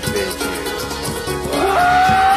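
Folk band music: a low continuous drone under plucked string notes and a steady beat, typical of a didgeridoo with mandolin and dulcimer. A long held high note comes in about one and a half seconds in.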